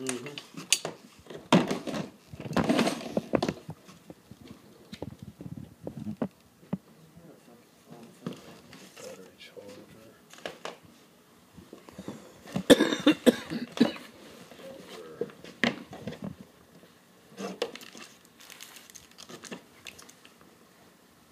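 Handling noise from unpacking a kit out of a moulded plastic carrying case: scattered clicks, knocks and crinkling of packaging as parts are lifted out, busiest about two seconds in and again past the halfway mark, with some indistinct talk.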